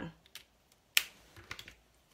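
A plastic pen cap snapping onto a dual-tip marker with one sharp click about a second in, with a few lighter clicks of pens being handled around it.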